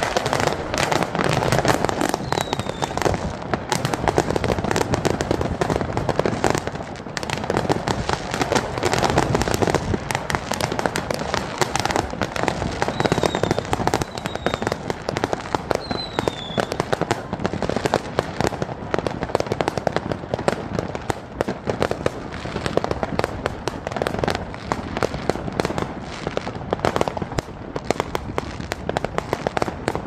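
Many fireworks going off together: a dense, unbroken barrage of bangs and crackles. A few short falling whistles come through it.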